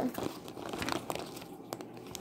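Paper coffee filter crinkling and rustling as it is handled, in faint irregular crackles.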